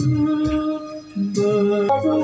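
Background music with long held notes that change pitch a little past halfway.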